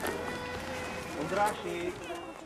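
Voices talking, with a steady held tone through about the first second.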